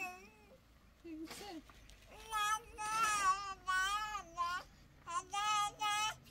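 A high-pitched voice in long, wavering sing-song phrases, starting about two seconds in after a short lull.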